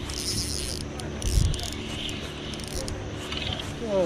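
Spinning reel being cranked to wind in a hooked fish, with a low steady hum underneath.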